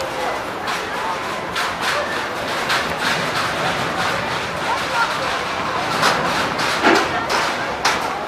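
Indistinct voices and background chatter, with scattered short knocks and clatters.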